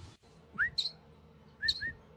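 A hand-held fledgling songbird gives three short chirps: one about half a second in, and two close together near the end.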